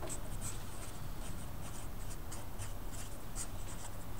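Sharpie felt-tip marker writing on a sheet of paper: a quick run of short pen strokes, with a low steady hum underneath.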